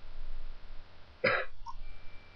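A person coughs once, briefly, a little past halfway, over a low rumble.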